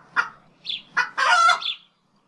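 Chicken clucking in a quick run of short clucks, then a longer drawn-out call a little after a second in. It is an added sound effect, clean and without background.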